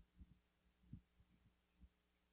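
Near silence: a faint steady electrical hum with a few soft, low thumps, the first right at the start and the others about a second apart.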